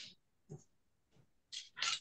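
Paper being handled: a few short rustles, a faint one about half a second in and two louder ones close together near the end.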